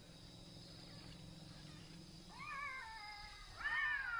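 Newborn elephant calf squealing: two high, wavering cries that rise and then fall in pitch, the first a little after two seconds in and the second, louder, near the end. A low rumble runs underneath in the first half.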